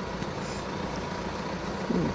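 Steady low rumble and hiss of outdoor background noise, with a faint steady tone, during a pause in speech.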